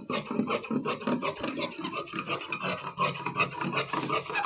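Large tailor's shears cutting through woven dress fabric laid on a table: a rapid, continuous run of short snips as the blades close again and again along the cut.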